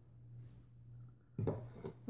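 Hands being wiped on a cloth: faint rubbing, louder in the last half second, over a low steady hum.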